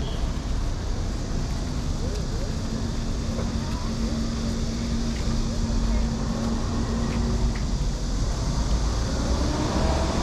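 Steady road-traffic rumble with passers-by talking. A steady low hum joins about two seconds in and stops at about seven and a half seconds.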